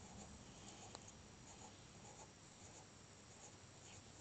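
Very faint pencil strokes on paper while small shapes are drawn, barely above room tone.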